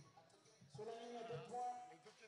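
Faint announcer's voice over the venue's public-address loudspeakers, in long drawn-out syllables.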